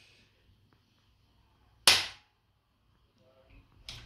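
Activator adjusting instrument firing once about two seconds in: a single sharp spring-loaded click as it delivers a quick thrust onto the T1 vertebra of the upper back.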